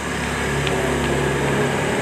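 A small motor running steadily, an even hum that holds one pitch.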